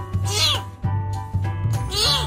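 A bottle-fed kitten meowing twice, short cries that rise and fall in pitch, about a second and a half apart, over background music.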